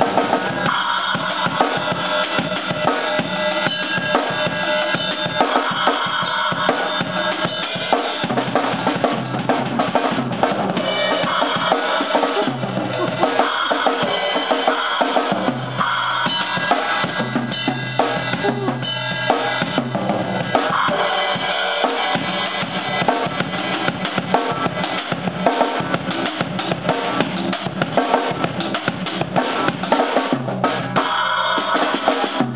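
Acoustic drum kit played with sticks: a busy, continuous run of snare, bass drum and cymbal strokes.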